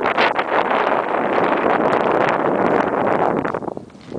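Wind buffeting the microphone: a loud, even rushing noise that holds for about three seconds and dies away near the end.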